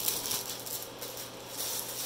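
Clear plastic wrapping crinkling and rustling as hands handle a cardboard tube, in two spells of crackling near the start and again near the end, over a faint steady hum.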